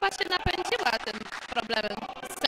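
People talking, with a single short dull thump about half a second in.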